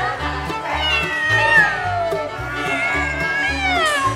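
Background music with a steady beat, over which a cat meows twice in long falling calls, about a second in and again near the end.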